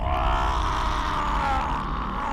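A man's long, drawn-out groan of pain from the film's soundtrack, one held cry that bends gently in pitch.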